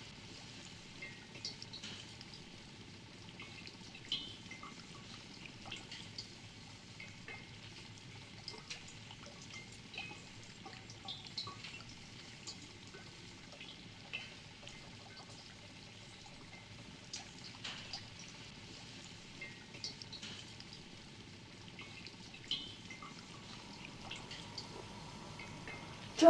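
Faint fizzing from foam bubbling over in a glass jar: scattered tiny pops and crackles over a low steady hiss.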